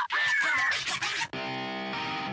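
Background music with guitar: gliding notes at first, then a chord held steady from just over a second in.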